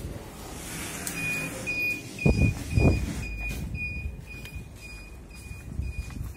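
A heavy entrance door thuds twice a couple of seconds in. Through it all an electronic beeper sounds a short high beep about twice a second.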